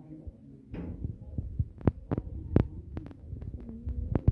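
Uneven low rumble on a handheld phone's microphone, with a string of sharp clicks and knocks from just under two seconds in, the loudest a little past halfway: handling noise from the phone.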